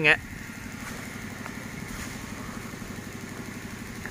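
A small engine running at idle in the background: a low, steady hum with a fine rapid pulse.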